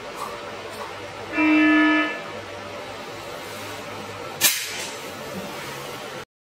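A shooting simulator's electronic beep, one steady tone lasting under a second. About two and a half seconds later comes a single sharp snap as the shot is taken.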